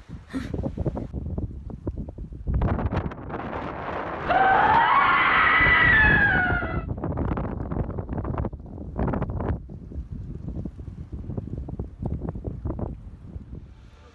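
Wind buffeting the microphone in irregular gusts on a rocky seashore. About four seconds in comes a loud, high cry with several overtones whose pitch arches up and then slides down, lasting about two and a half seconds.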